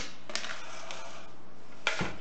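Quartz crystal clusters being set down into a plastic bucket, stone clicking against stone. There are a few sharp clicks: one at the start, one shortly after, and two close together near the end.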